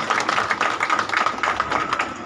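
A group of people clapping together: a dense run of quick claps, easing off near the end. A thin steady high tone runs underneath.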